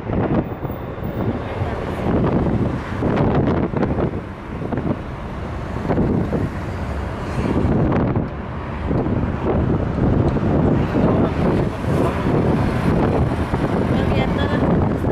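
Wind buffeting the microphone and road noise from a car driving along, rising and falling in irregular gusts.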